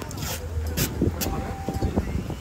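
Low wind rumble on the microphone, with a few sharp crackles of paper and tape as a poster is pressed and taped onto a truck's corrugated aluminium side.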